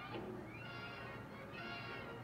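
Cartoon soundtrack playing from a television speaker and picked up off the room: fairly quiet, with short high-pitched phrases recurring about once a second.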